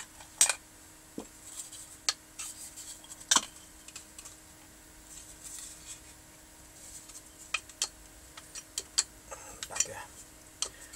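Scattered sharp clicks, taps and light scrapes of a curved shield from around an X-ray tube being handled and bent by hand, with two louder knocks, one about half a second in and one a little past three seconds.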